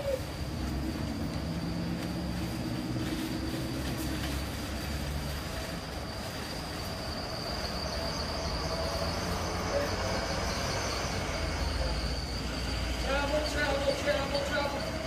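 Motor-vehicle noise: a low, steady engine hum that deepens into a rumble near the end, with a faint steady high whine above it.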